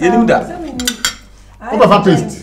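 Forks clinking against dinner plates during a meal, with a few sharp clinks about a second in. A voice talks at the start and again near the end.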